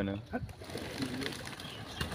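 Domestic pigeons cooing, low and faint, after a man's voice ends at the start.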